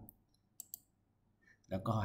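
A computer mouse button clicked once, a short sharp double tick about half a second in, selecting an item from an on-screen dropdown list.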